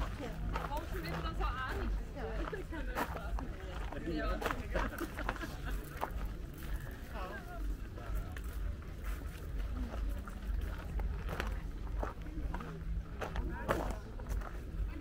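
Background chatter of passing shoppers' voices, with scattered clicks and a steady low rumble underneath.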